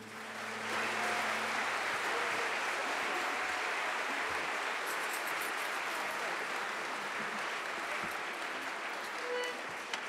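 Audience applauding: a steady wash of clapping that swells within the first second and thins slightly toward the end.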